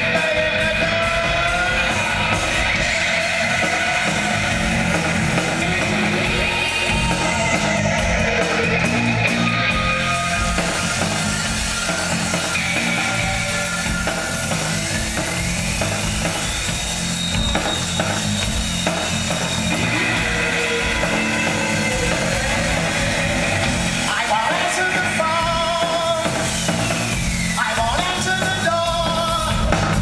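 A post-punk band playing live, with drum kit and guitar, heard loud from the audience. A male voice sings at the start and again in the last few seconds, and a sliding tone rises and falls in the middle.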